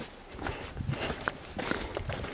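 Footsteps walking on the sandy, gritty floor of a narrow canyon, at about two steps a second.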